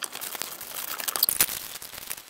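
Crinkling and rustling of plastic parts bags and packaging being handled as a kit box is opened, with many small irregular crackles and clicks.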